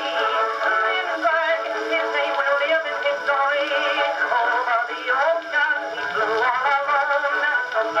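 Edison cylinder phonograph playing Blue Amberol cylinder 5362, an old acoustic recording of a song with band accompaniment. The sound is thin, with little bass.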